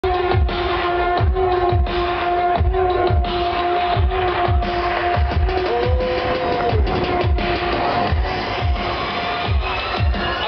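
Electronic dance music played loud over a festival sound system: a deep kick drum dropping in pitch on each beat, about three beats every two seconds, under a long held synth note that bends up and back down around the middle.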